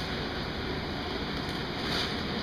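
Steady rushing noise of a ventilation fan running, even and unchanging.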